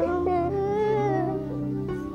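A young boy whimpering and crying in a drawn-out whine, over soft background music with sustained low notes.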